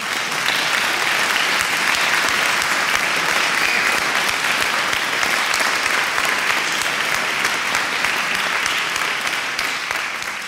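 Audience applause: a dense patter of many hands clapping that swells in over the first second, holds steady and begins to fade near the end.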